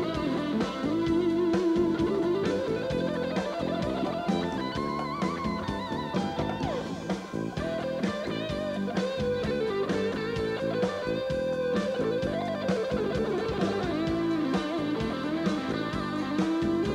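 Live rock band with a Stratocaster-style electric guitar playing a lead of long, bent and wavering sustained notes over drums.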